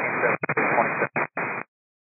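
Air-band VHF radio static: a steady hiss with a few brief dropouts that cuts off abruptly about one and a half seconds in, as the transmission ends.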